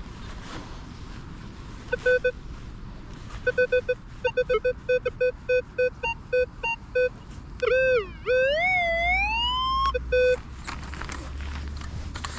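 Metal detector target tones: short, steady-pitched electronic beeps starting about two seconds in, coming quicker and in an even run from about four seconds. Near eight seconds comes one continuous tone that dips, then climbs in pitch for about two seconds, followed by a last short burst of beeps.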